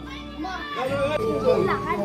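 High-pitched children's voices calling and playing, with people talking and music behind them.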